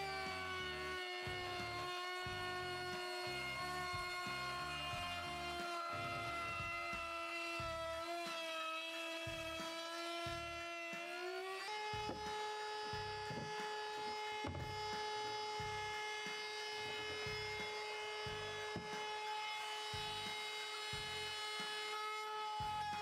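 Small handheld power-tool motor, likely a cordless trim router, running with a steady high whine. Its pitch sags slowly, then steps slightly higher about halfway through and holds steady.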